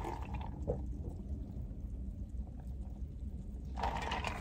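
Faint sips and swallows of a drink from a large paper cup, over a low steady hum.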